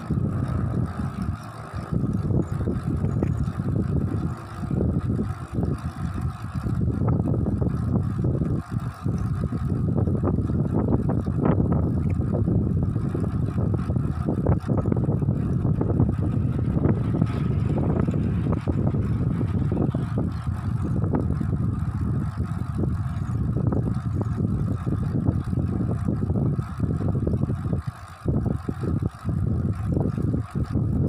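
Wind rumbling and buffeting on the microphone of a camera mounted on a moving road bike, with a few brief lulls, the longest near the end.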